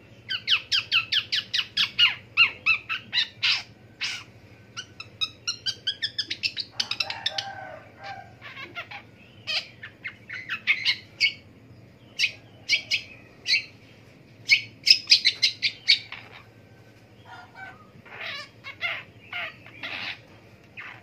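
Long-tailed shrike (pentet) singing a long, varied chattering song: quick runs of high notes, about five a second, broken by short pauses, with a rougher, lower phrase about seven seconds in.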